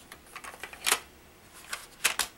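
Light clicks and taps of hard plastic toy-playset parts being handled and fitted together, the loudest about a second in.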